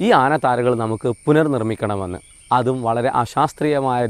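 A man talking in Malayalam, with short pauses, over a steady high-pitched drone of insects such as crickets.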